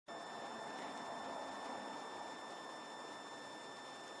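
Faint steady background noise with a few thin, constant high-pitched tones running through it; no distinct event.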